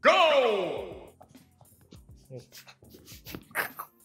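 A countdown sound effect on the 'go': a loud falling tone with many overtones that fades out over about a second. It is followed by scattered faint breaths and mouth noises from people biting at donuts hung on strings.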